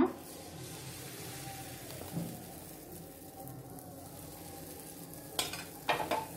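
Batter sizzling steadily as it is ladled into a hot buttered frying pan and spread out, with a couple of sharp utensil clicks near the end.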